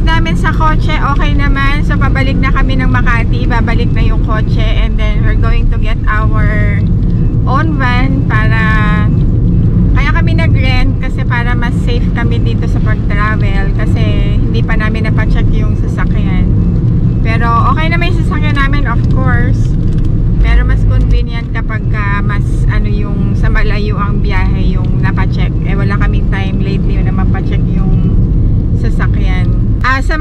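A woman talking over the steady low rumble of road and engine noise inside the cabin of a moving Toyota Vios.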